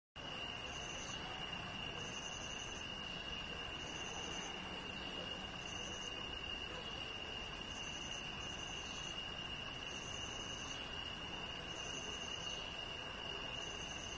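Night insects, crickets, trilling continuously on one high steady note, while another insect buzzes in short higher bursts about once a second, over a steady low hiss.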